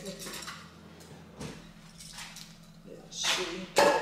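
Small hard objects clattering and knocking as someone rummages through a box by hand: a few scattered knocks, then a louder sharp knock near the end.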